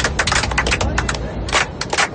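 A fast, uneven run of sharp percussive strikes, several a second, with voices faintly underneath.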